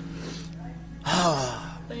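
A man's loud breathy gasp or cry, falling in pitch, about a second in: a preacher overcome with emotion. Under it run the steady low held notes of soft background music.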